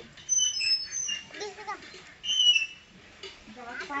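Birds chirping: two clusters of short, thin, high calls, one soon after the start and another just past the middle.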